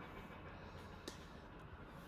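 Near silence: faint steady room noise with a low hum, and a tiny tick about a second in.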